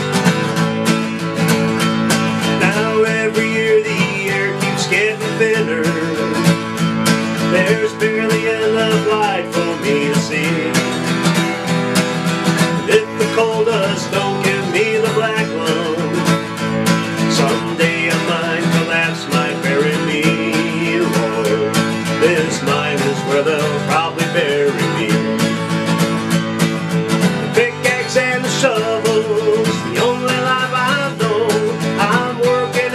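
Acoustic guitar strummed in an Appalachian folk/bluegrass style, with a man singing along.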